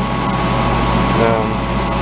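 Steady machinery drone with an electrical hum running underneath, with no starts or stops. A brief bit of voice comes in about halfway through.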